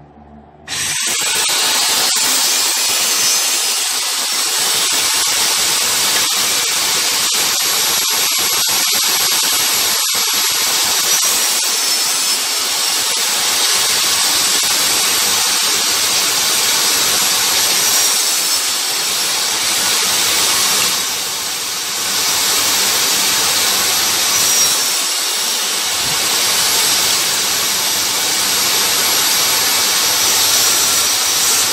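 Benchtop table saw switched on about a second in, then running steadily with a dense high whine while the blade cuts a wooden hexagon blank on a chipboard sled. The level dips briefly about two-thirds of the way through.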